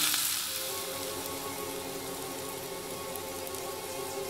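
Food and a diamond necklace sizzling on a charcoal barbecue grill as a cartoon sound effect: a steady hiss, loudest at the very start. Steady held music tones run underneath.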